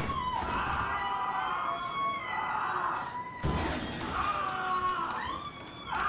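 Glass shattering in a fight, two crashes about three and a half seconds apart, with held steady tones running through.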